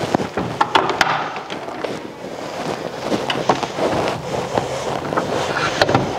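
Rubbing and rustling noise on a clip-on wireless microphone while walking, with several sharp clicks and knocks as doors are pushed closed.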